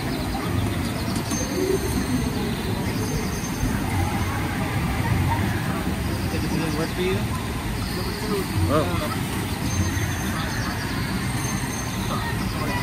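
Steady rush of water through a river-rapids raft ride's channel, with distant voices and a few short bird calls over it.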